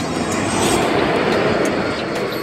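Electric locomotive and passenger coaches passing at speed: a loud rushing rumble of wheels on rail that swells about half a second in as the locomotive goes by.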